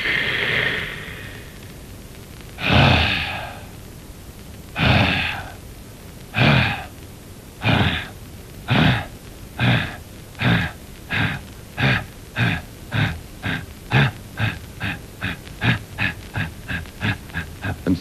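A man imitating a steam locomotive pulling away with his voice: a long hiss of steam, then chuffs that start slow and steadily speed up until they come about three a second.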